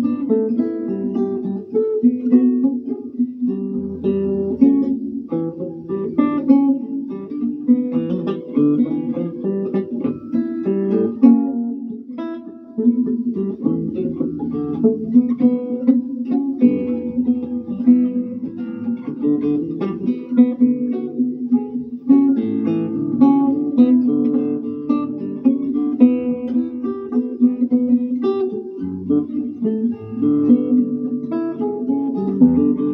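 Solo nylon-string classical guitar, fingerpicked, playing a continuous melody with chords, with a brief softer moment about midway.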